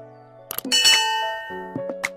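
A click and then a bright bell ding that rings out and slowly fades, the sound effect of a subscribe-button animation, over ongoing background music.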